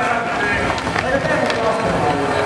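An indistinct voice with crowd noise in a large hall, and a few sharp clicks from a skateboard rolling over the floor.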